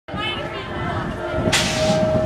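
Voices in the background, then a sudden sharp hiss lasting about half a second near the end, with a steady tone sounding just before it.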